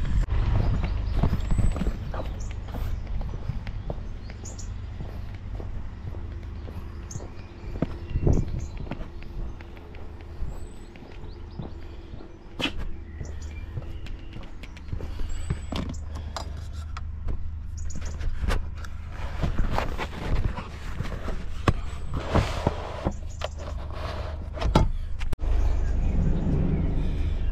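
Footsteps and the knocks and rustles of a parcel being carried and set down on a doorstep, over a steady low rumble. Near the end there is a heavy knock at the delivery van's door.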